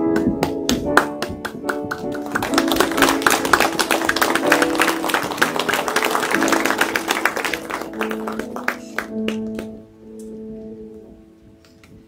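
Grand piano playing, busier in the middle, then slowing to long held notes that fade away near the end.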